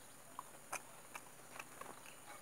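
Wet mouth clicks and smacks from someone chewing soft, ripe jackfruit flesh, a handful of sharp clicks at uneven intervals, the loudest about three-quarters of a second in.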